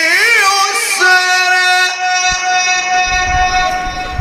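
A man's voice chanting Quranic recitation in the Egyptian mujawwad tajweed style, amplified through a microphone: a quick wavering ornament, then one long high note held for about three seconds. A low rumbling noise rises under it near the end.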